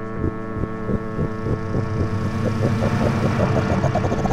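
Live electronic computer music: a sustained drone of many stacked tones under a pulsing beat that speeds up and grows slightly louder.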